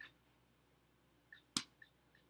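A single sharp click about one and a half seconds in, with a few faint small ticks around it in an otherwise quiet room.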